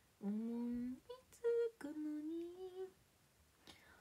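A woman humming a short melody to herself, a few held notes with brief gaps between them, trailing off about three seconds in.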